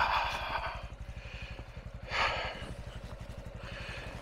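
Honda Trail 125's air-cooled single-cylinder four-stroke engine idling with a steady, rapid low pulse. There is a short noisy swish about two seconds in.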